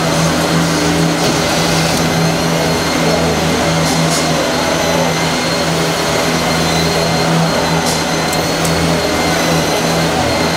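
Textile factory machinery with fabric rollers running: a steady, loud mechanical hum with a constant low drone and faint high whines, with a couple of brief hissing ticks about four and eight seconds in.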